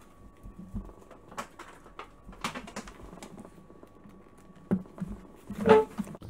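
Scattered light clicks and knocks of handling close to the laptop's microphone, likely from the charger being plugged in, over a faint steady high hum.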